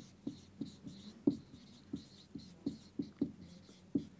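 Marker squeaking on a whiteboard as a line of handwriting is written: a string of short squeaks, each dropping in pitch, a few a second.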